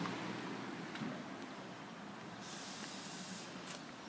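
Faint steady outdoor hiss of background noise, with a brief rise in the high hiss a little past halfway.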